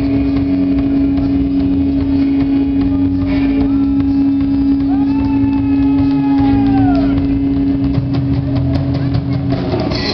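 Rock band playing live through a PA: one long held low note drones under the passage, a higher pitched line slides up, holds and drops away around the middle, and drum hits pick up near the end as the full band comes back in.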